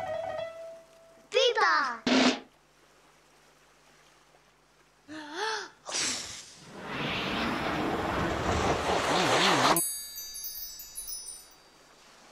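Short wordless gliding 'oh' exclamations in a man's voice, then a long swelling whoosh lasting about four seconds, then a high twinkling chime that steps downward near the end, all from a children's television soundtrack.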